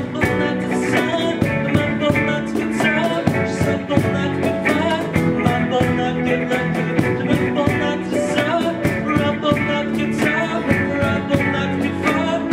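Live rock band playing an instrumental passage: electric guitars, bass, keyboard and drums over a steady beat.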